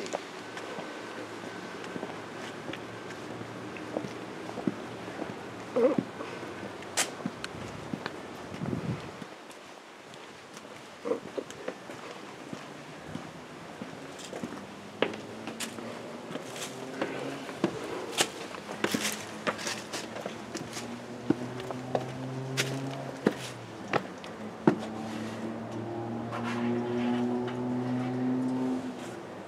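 Footsteps of a person walking, with scattered knocks and scuffs. Faint music with long held notes comes in during the second half and grows louder near the end.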